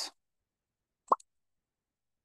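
A single short, sharp click about a second in, followed by a much fainter tick.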